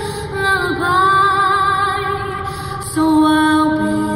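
A woman singing a slow, lullaby-like melody in long held notes with vibrato; about three seconds in, lower held notes come in.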